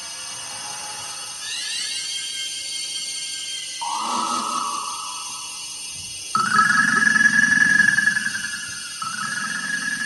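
Experimental electronic music made of held tones. A cluster of sliding high tones comes in about a second and a half in, and a lower held tone joins near four seconds. Just past six seconds a louder, ringing high tone over a low buzz starts suddenly; it breaks off near nine seconds and starts again at once.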